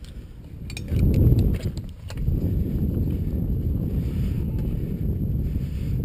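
A few light clicks and clinks of metal climbing hardware being handled in the first two seconds, then a steady low rumble of wind on the microphone.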